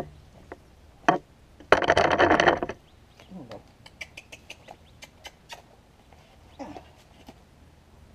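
A barnyard chicken gives one loud call lasting about a second, just after a sharp knock. This is followed by scattered light clicks and scrapes of a hoof pick working a horse's hind hoof.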